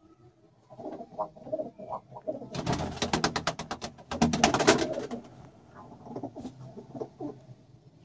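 Domestic pigeons cooing in a loft, with two bursts of rapid wing flapping a few seconds in, the loudest part.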